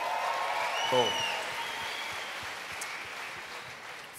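Audience applauding, the clapping slowly dying away, with one rising-and-falling whistle from the crowd near the middle.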